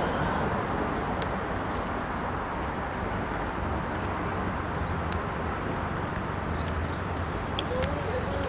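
Steady city street background noise of traffic, with a few small clicks, two of them close together near the end.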